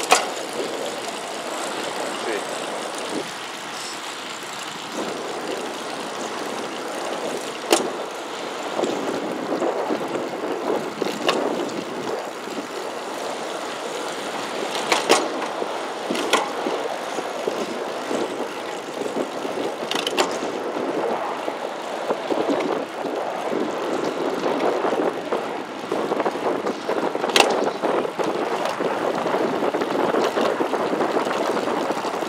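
Wind rushing over a helmet-mounted action camera, mixed with road and traffic noise, while riding a road bike along a highway. The rush swells and eases, and several sharp clicks or knocks come through it.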